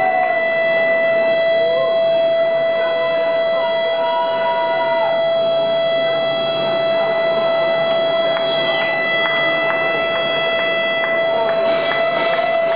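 A single high, pure-sounding note held steady from an electric guitar feeding back through its amplifier, with fainter higher overtones above it.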